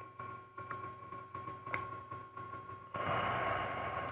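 A computer mouse clicking a few times over a faint, steady high-pitched hum, then about a second of hiss near the end.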